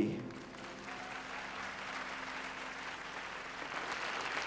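Concert audience applauding at the end of a song, the clapping growing louder near the end. A faint held low note sounds underneath and fades out just before the end.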